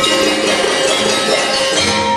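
Banjar gamelan ensemble playing dance accompaniment: metallophones and gong chimes ringing in many overlapping steady metallic tones, without a break.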